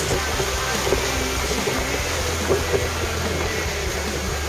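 Steady rush of wind buffeting the microphone and water running past the hull of a sailing yacht under way at sea, with a constant low rumble.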